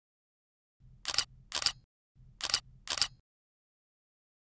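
Camera shutter sound effect: two shutter releases starting about a second in, each a pair of sharp clicks about half a second apart, with a faint low hum under each pair.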